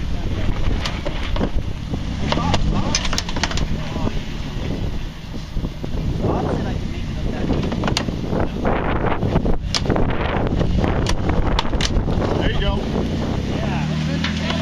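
Jeep Wrangler engine working at low speed as it crawls up a rock ledge, with scattered sharp knocks and crunches of tyres on rock and gravel, and wind on the microphone.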